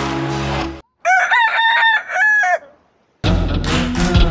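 A rooster crows once, a cock-a-doodle-doo lasting about a second and a half, between brief gaps of silence. Background music stops just before the crow and starts again near the end.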